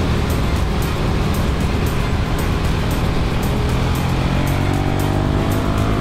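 KTM 1290 Super Duke R's V-twin engine running under way, its revs rising over the last couple of seconds, with wind rushing over the handlebar camera. Backing music with a steady beat plays over it.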